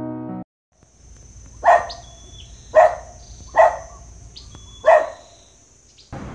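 Piano music ends just after the start, then a dog barks four times, spaced about a second apart, over a faint outdoor background with a steady high-pitched tone.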